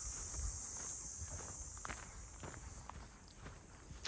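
Footsteps of a person walking on a path, with a steady high-pitched insect chorus in the background.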